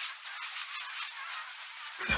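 Fizzing sparkler sound effect, a steady high hiss full of small crackles.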